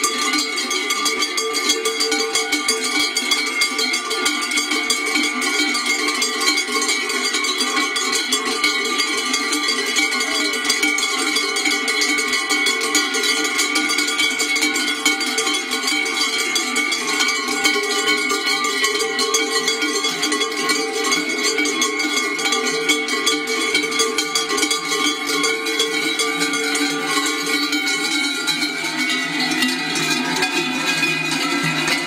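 Many large cowbells shaken and rung together in a dense, unbroken clanging that never pauses.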